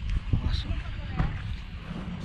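Wind rumbling on the microphone, with a few soft thumps and faint voices in the background.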